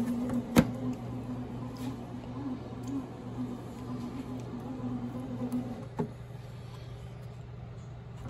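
Bread machine motor running as it kneads dough in the mixing stage: a steady low hum with a wavering drone above it. A sharp click comes about half a second in, and the drone stops with another click about six seconds in while the low hum carries on.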